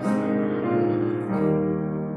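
Keyboard playing a slow hymn tune in sustained chords, the harmony changing about every two-thirds of a second.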